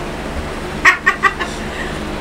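A woman's short cackling laugh: about four quick pitched 'ha' pulses about a second in, over a steady low hum.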